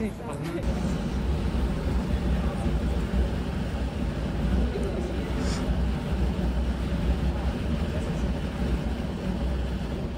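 Large gas-fed eternal flame burning with a steady, low rush of sound, which sets in just under a second in.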